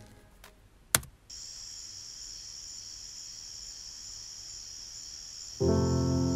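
A single laptop key click about a second in, then crickets chirping steadily on the music video's soundtrack, with the song's music coming in with a sustained chord near the end.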